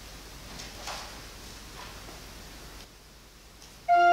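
Faint rustling and light knocks of papers being handled at a lectern. Near the end an organ chord begins, much louder, its notes held steady.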